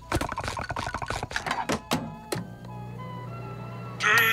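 Cartoon sound effects under a music cue: a quick run of clicks and knocks as a frozen patty is handled, then a steady low hum from a little past halfway in, as a microwave oven runs with the patty inside.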